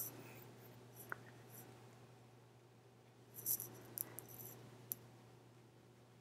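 Quiet room tone: a steady low hum with a few faint, scattered clicks and taps, a small cluster of them about three and a half seconds in.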